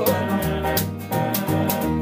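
A small acoustic band plays a short instrumental bar between sung lines: a strummed acoustic guitar, upright bass notes and a lap-played guitar, over a steady beat of sharp hits about four a second.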